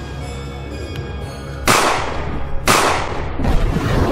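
Two gunshots about a second apart, each trailing off in a long echoing tail, over steady background music.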